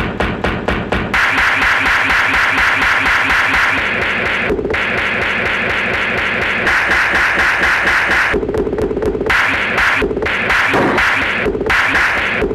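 Looped, chopped old-film soundtrack with music: a short snippet stutters, repeated about four times a second for the first second. Then comes a dense, steady mix, broken by several brief edit gaps in the second half.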